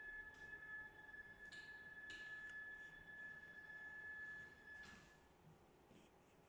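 Faint, steady high-pitched whine from a vertical wall printer as it is being repositioned, cutting off about five seconds in, with a few faint taps.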